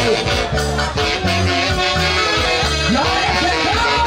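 A live band playing loud, amplified dance music through PA speakers, with a steady beat, a low bass line and a sliding melody line.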